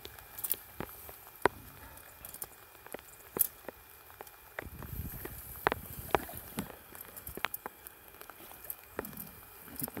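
Scattered sharp clicks and knocks of a steel 280 body-grip trap and its springs being handled as a trapped otter is pulled from the water's edge, with low handling rumble about five seconds in.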